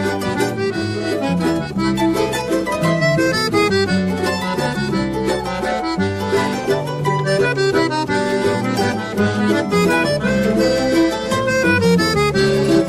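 Instrumental choro played by a small ensemble, a melody line over a running bass line, without a break.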